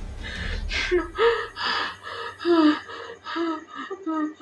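A woman sobbing: a run of short cries, about two a second, over a low rumble that fades out about halfway through.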